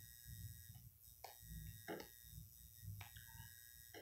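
Near silence: faint room tone with a low hum, broken by a few faint short sounds about one, two and three seconds in.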